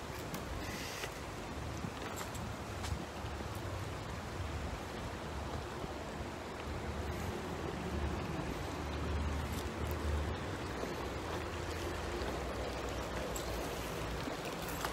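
A shallow stream running over rocks, a steady rushing hiss, with wind rumbling on the microphone.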